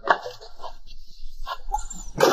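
An animal calling in short bursts, about four times, the loudest right at the start.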